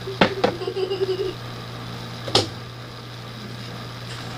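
Sharp clicks or knocks of objects being handled: two close together near the start and one more about two seconds later, over a steady low hum.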